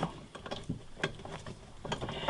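A few faint metallic clicks and taps from a wrench working on an air-conditioning line fitting as it is tightened back down.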